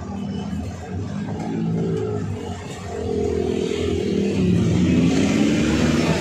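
Passenger jeepney engine heard from inside the cabin, running and then revving up with a rising pitch over the last couple of seconds as the vehicle pulls away.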